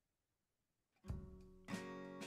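Near silence for about a second, then a short plucked-string music sting starts suddenly and is struck again about half a second later: the quiz's cue that time is up and the answer is being revealed.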